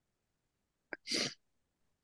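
A single short, sharp burst of breath noise from a person over a video call, about a second in: a quick catch followed by a brief hissing rush of air.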